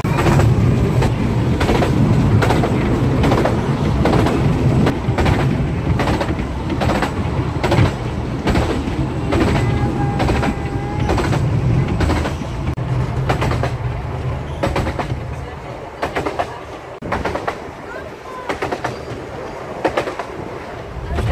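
Narrow-gauge railway carriage running along the track, heard from inside: a steady low rumble with repeated sharp clicks of the wheels over the rail joints, quieter for the last few seconds.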